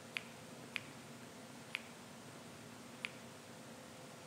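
Four faint, sharp clicks at uneven intervals over a low steady hum: a presenter's clicker advancing the lecture slides.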